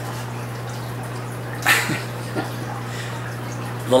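A steady low hum with faint trickling water, with one short breath about two seconds in.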